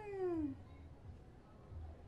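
A single drawn-out vocal call that rises briefly and then slides down in pitch, dying away about half a second in, followed by a faint low hum.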